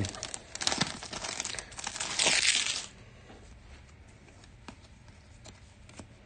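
Foil trading-card pack wrapper of 2023 Panini Absolute Football being crinkled and torn open by hand, with a loud rip just after two seconds in. The crinkling stops at about three seconds, leaving only faint clicks of the cards being handled.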